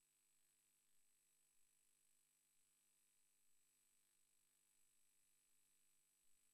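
Near silence: only a faint, steady hiss with a thin high tone, the idle sound of the feed.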